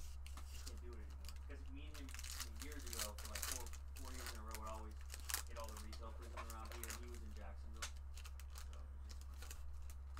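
A baseball card pack's wrapper being torn open and crinkled by hand, with a scatter of crackles. Quiet speech runs underneath, and a steady low hum.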